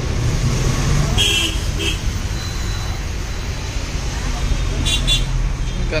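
Steady low rumble of road traffic, with background voices and two brief high-pitched sounds, about a second in and near the end.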